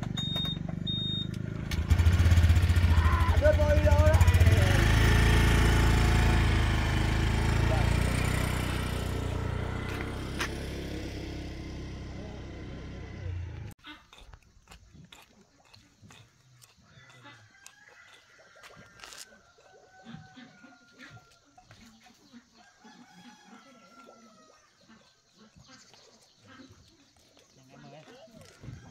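A motorbike engine starts about two seconds in, runs loud and then fades as the bike carrying riders pulls away, cutting off suddenly about halfway through. After that, a much quieter rural background with a few faint bird calls.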